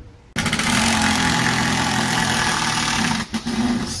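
A handheld power tool's motor starts suddenly and runs loudly and steadily, cutting or grinding, with a short break about three seconds in.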